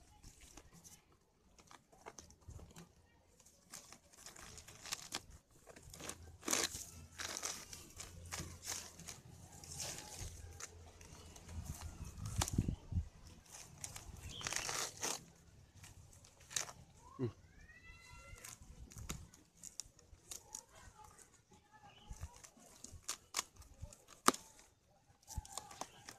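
Fern roots and fibrous palm-trunk matter being pulled and torn out by hand, in irregular bursts of ripping and rustling leaves.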